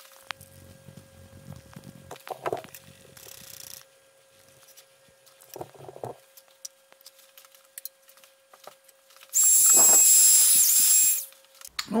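A small electric tool gives a loud, high-pitched whine for about two seconds near the end, dipping briefly in pitch. Before it there is a faint steady hum and a few soft knocks.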